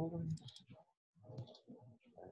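A person's voice speaking quietly and indistinctly, with a computer mouse click at the start.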